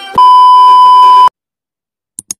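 Television test-card tone: a single loud, steady beep lasting about a second that cuts off suddenly, the bleep sound effect that goes with colour bars. The tail end of electronic intro music is heard just before it.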